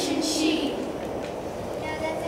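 A short voice sound in an echoing gym that fades out within the first second, leaving a steady low background rumble of the hall.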